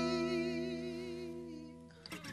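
A voice holding a long note with a slight waver over a ringing acoustic guitar chord, both fading away and stopping just before the end.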